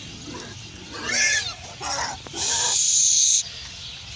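Pigs squealing in three harsh calls: a short one about a second in, another near the middle, and a longer, louder one that cuts off suddenly near the end.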